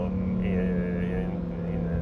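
Lamborghini Huracán Performante's 5.2-litre V10 engine running at steady cruising revs while the car is driven, a constant even drone.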